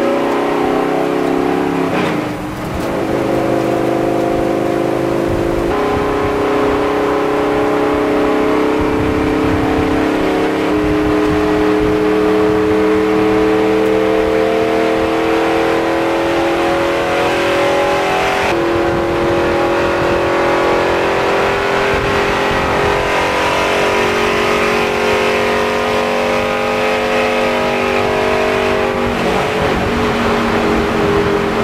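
Race car engine running hard through a hot lap, heard from inside the cockpit. Its pitch dips sharply about two seconds in, then climbs slowly with a few sudden steps.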